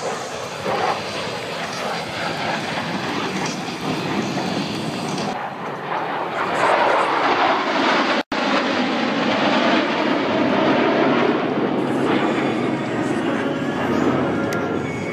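Jet noise from the US Air Force Thunderbirds' F-16 Fighting Falcons flying over in a four-ship formation: a steady rushing noise that grows louder about six seconds in. The sound drops out for an instant just after eight seconds.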